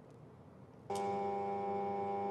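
Near silence, then a steady electrical hum with several pitches comes on suddenly about a second in and holds level.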